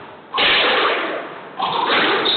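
Squash ball struck hard with a sharp crack about a third of a second in, echoing around the walled court and fading over about a second. A second crack of ball on racket or wall comes near the end.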